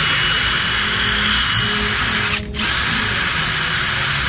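Milwaukee M18 Fuel 2861-20 brushless mid-torque impact wrench running unloaded at its highest setting, mode 3, with a high steady whine. The trigger is let go briefly about two and a half seconds in, then pulled again.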